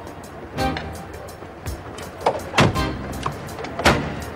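Background music with a few sharp thuds, the loudest about two and a half and four seconds in.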